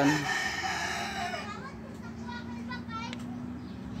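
A rooster crowing once: one long call of about a second and a half that drops off at the end.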